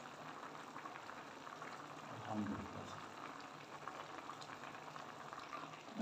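Chicken and broth simmering in a steel pot, a faint steady bubbling, with one brief low sound a little over two seconds in.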